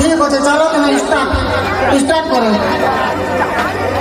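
Several voices talking over one another, with a low hum that comes up about a second and a half in.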